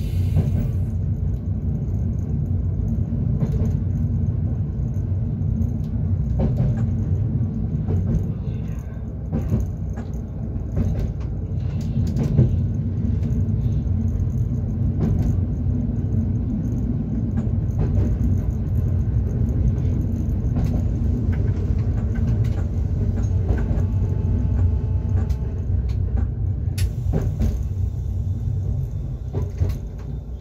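Running noise of a Tatra electric railway class 425.95 electric multiple unit heard inside the cab as it travels along the track: a steady low rumble with scattered clicks and rattles.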